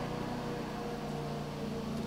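Steady low hum of room tone, several even pitches held without change over a faint hiss, with no other event.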